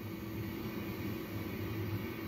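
Steady hum and hiss of neonatal intensive-care equipment: the incubator and the infant's breathing-support circuit running continuously.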